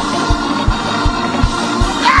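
Live church music: sustained organ chords over a fast, steady low drumbeat of about three beats a second.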